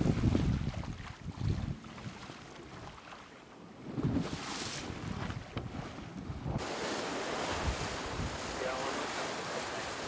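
Sea water rushing and splashing past the hull of a VO65 racing yacht under sail, with wind buffeting the microphone in gusty surges. About two-thirds of the way in the sound changes abruptly to a steadier, brighter rush of wind and water.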